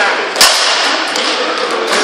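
A rattan sword blow landing hard in armoured sparring: one sharp, loud crack about half a second in, followed by a fainter knock a little after a second, in an echoing hall.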